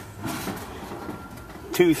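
Low, steady background noise in a pause between spoken phrases, with a man's voice coming back in near the end.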